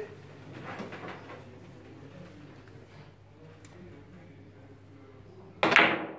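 Quiet hall murmur, then near the end one loud, sharp click of a billiard cue striking the ball on a carom (French billiards) table.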